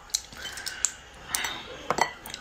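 Shell of a raw soy-marinated crab cracking and clicking as it is pulled apart by hand: several short sharp cracks, the loudest near the end.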